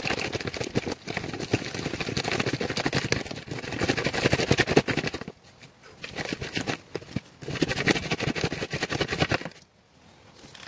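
Gravel and dirt rattling in a classifier screen as it is shaken over a bucket, in three bouts of dense rattling with brief pauses between them.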